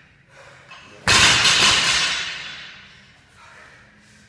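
A loaded barbell (a 20 kg bar with 10 kg and 1.25 kg bumper plates, about 42.5 kg) dropped from overhead after a power snatch onto rubber gym flooring. It lands about a second in with one loud crash that dies away over about a second and a half.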